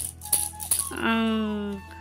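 Plastic baby rattle shaken by a toddler, rattling in short bursts near the start and again about a second in. The loudest thing is a steady pitched tone held for most of a second, starting about halfway through.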